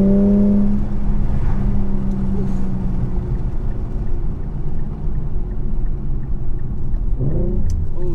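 Infiniti Q50 3.0t twin-turbo V6 running through a custom catback exhaust, heard from inside the cabin: a steady drone that rises slightly in pitch over the first few seconds, then a low rumble. Near the end there is a brief pitch sweep as the car is downshifted.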